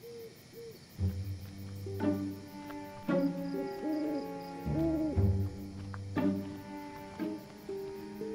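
Film score of sustained low notes and held chords, entering about a second in, with a deep bass underneath. An owl hoots a few times around the middle.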